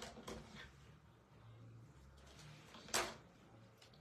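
Quiet room tone with one short, sharp click about three seconds in.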